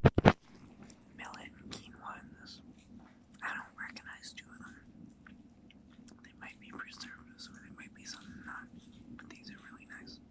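Close-up chewing and wet mouth sounds of a man eating, in short irregular bursts. Two loud knocks at the very start come from the phone being handled.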